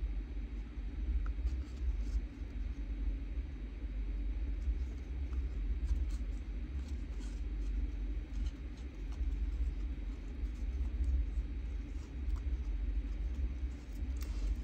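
Steady low rumble, with faint rustling and light ticks from twine being knotted around a card tag.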